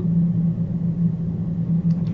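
A steady low hum with no change in pitch or level, the constant background noise that also runs beneath the voice.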